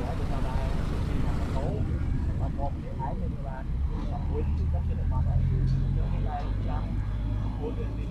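Street traffic: a vehicle engine running with a steady low hum that grows stronger a few seconds in, under scattered voices of bystanders.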